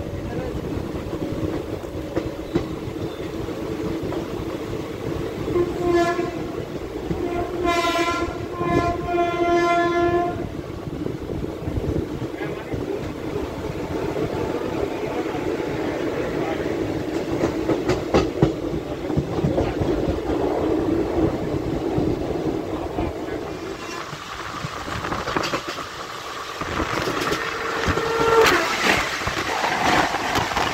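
Passenger train running at speed, its wheels rattling on the rails as heard from an open coach door. About six seconds in, a train horn sounds three blasts, one short and then two longer, over some four seconds. Near the end the noise swells as another train rushes past on the next track.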